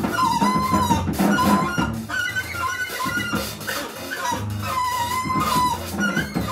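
Free-jazz trio playing: tenor saxophone holding high, wavering notes that bend in pitch, over bowed double bass and busy drums and cymbals.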